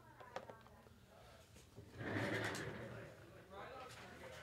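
Mostly quiet room sound with faint low speech, a couple of small clicks under a second in, and a short hiss-like rustle lasting about a second, starting two seconds in.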